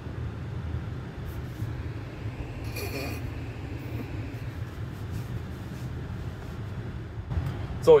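Steady low road and tyre rumble inside the cabin of a 2023 Tesla Model Y Long Range driving along a street, with a brief faint higher sound about three seconds in.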